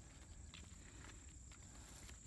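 Near silence: faint outdoor ambience with a steady, thin high-pitched tone and a few soft footsteps.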